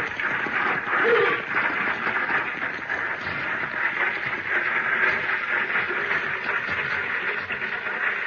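Radio-drama sound effect of a six-horse stagecoach getting under way and rolling: a steady clatter of hooves and rattling coach, with two short calls in the first second or so.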